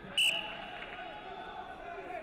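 A short, sharp blast of a referee's whistle about a quarter second in, followed by the murmur of a large sports hall.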